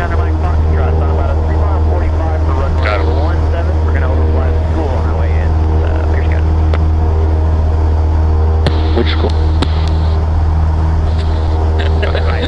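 Cessna 172's piston engine and propeller running steadily at climb power just after takeoff, heard loud inside the cockpit. Faint voices come through in the first few seconds, and a few sharp clicks sound near the end.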